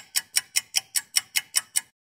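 Clock-ticking sound effect counting down a quiz answer: sharp, high ticks about five a second, stopping shortly before the end.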